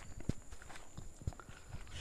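Faint footsteps on the ground, a few soft, irregular thuds.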